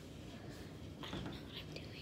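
A faint, whispered voice, heard briefly about a second in, over a low steady hum.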